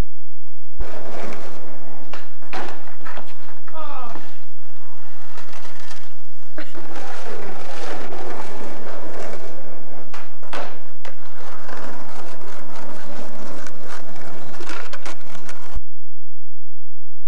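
Skateboard wheels rolling over pavement, broken by several sharp clacks of the board as tricks are popped and landed. The sound starts abruptly about a second in and cuts off just before the end.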